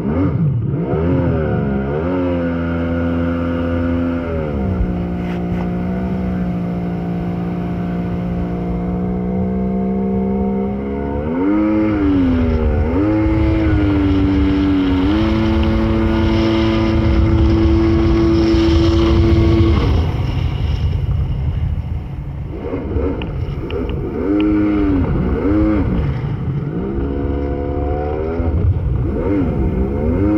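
1997 Tigershark personal watercraft's two-stroke engine running under way. The revs climb in the first couple of seconds, hold steady for long stretches, then rise and fall several times in the second half as the throttle is worked.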